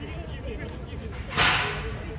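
Spectators' voices in the background, with a sudden short, loud hiss about one and a half seconds in that fades within half a second.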